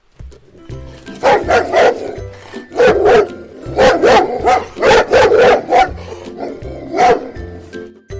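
A dog barking repeatedly, in quick runs of two to four barks with short gaps between them, with a last single bark near the end.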